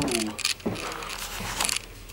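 A short falling vocal sound, then clicks and rattles of a handheld vlogging camera being carried. The camera's two small side bars rattle, a shaking sound he finds annoying.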